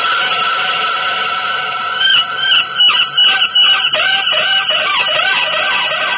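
Electric guitar playing a free-jazz line. It holds sustained notes, then from about two seconds in plays a run of quick notes that bend up and down in pitch.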